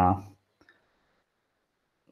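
A man's drawn-out word trails off in the first half second. Near silence follows, broken by a single faint click.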